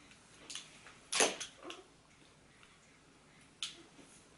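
Makeup brushes being handled: a few brief clicks and rustles, the loudest a little over a second in and another near the end.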